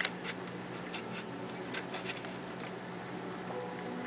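Scattered light clicks and ticks from a hand handling a homebuilt audio mixer's knobs and leads, over a steady low electrical hum.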